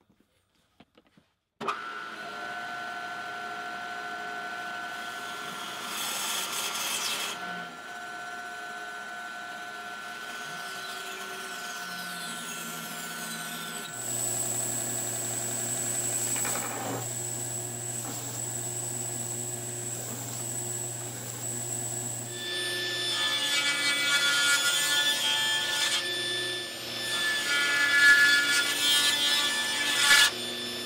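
Stationary woodworking power tools running in a shop, including a belt sander grinding the face of a glued-up hardwood block. The machine noise starts suddenly a couple of seconds in and changes twice, growing louder and harsher in the last third.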